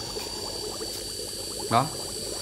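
Air from a small 3-watt aquarium air pump bubbling steadily and strongly up through a DIY lava-rock biological filter in a bucket of water.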